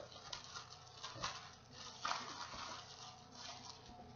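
Faint rustling of a clear plastic literature bag and paper being handled as a business card is slipped in, with a few light clicks about a second apart.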